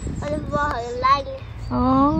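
A young child talking in a sing-song voice, drawing out one long vowel near the end.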